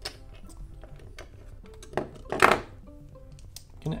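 Plastic LEGO bricks clicking and clattering as hands handle pieces and press them together, a few sharp clicks with the loudest clatter a little past halfway, over soft background music.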